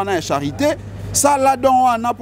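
A man speaking in animated bursts, with a short pause about a second in. A steady low hum runs underneath.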